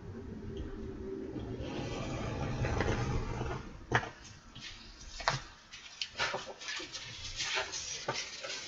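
Paper being creased with a hand roller: a steady rubbing roll for the first few seconds, then crackles and light taps as the folded paper is handled.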